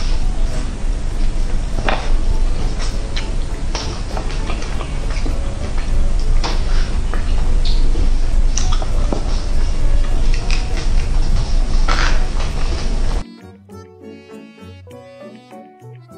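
Close-miked eating sounds of roast chicken: chewing, lip smacks and finger sucking with many sharp wet clicks over a steady low hum. About three seconds before the end this cuts off suddenly to quiet background music.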